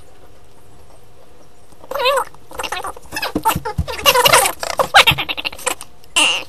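Fast-forwarded recording: about two seconds of a quiet, low hum, then high, squeaky sped-up voices in short chipmunk-like bursts mixed with clicks and clatter.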